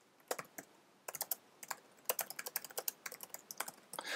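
Computer keyboard keys clicking as a short line of text is typed: a few separate keystrokes in the first second or so, then a quick run of keystrokes over the last two seconds.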